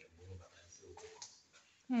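Quiet room tone with a faint low hum in the first half second. Right at the end a person exclaims "Oh", the voice gliding down in pitch.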